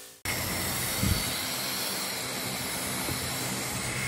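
Aerosol spray paint can hissing steadily, with a faint low hum beneath and a short thump about a second in.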